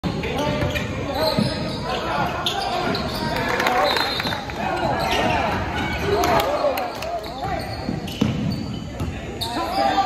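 Basketball bouncing and thudding on a hardwood gym floor during play, with voices of players and onlookers, all ringing in a large gym.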